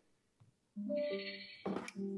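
A portable Bluetooth speaker, the Tribit, playing its electronic power-on chime: a short chord of steady tones about a second in, then a click and a second, lower chime starting near the end.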